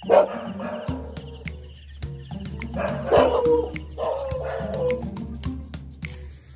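A dog barking and whining a few times, over background music.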